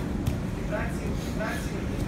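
Short snatches of indistinct voices over a steady low rumble of room noise, with a single sharp knock about a quarter second in.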